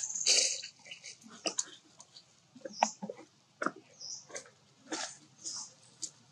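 Long-tailed macaques at close range making short, irregular sounds: sharp clicks and brief hissy bursts with quiet gaps between them.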